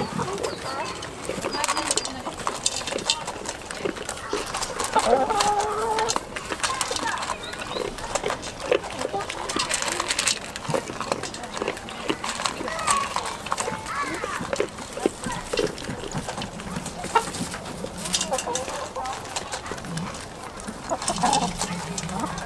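Hens clucking and calling among goats and chickens eating feed from metal bowls in straw. Many short clicks and knocks of feeding run throughout, with a short pitched call about five seconds in.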